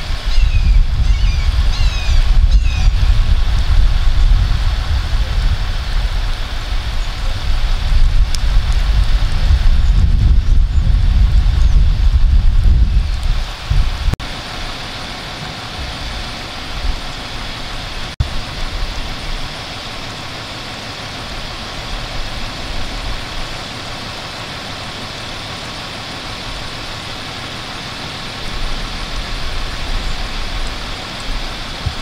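Fire engine running as it creeps forward, with a heavy, uneven low rumble for the first half that drops away suddenly about halfway through, leaving a steadier, quieter engine drone.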